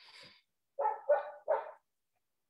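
A dog barking three times in quick succession, heard over a video-call connection.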